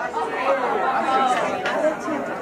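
A group of people chattering and talking over one another in a crowded room.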